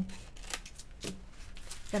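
Small sharp detail scissors snipping through heavy crepe paper, a few separate cuts.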